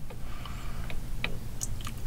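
A few soft clicks, spaced a fraction of a second apart, over a steady low hum.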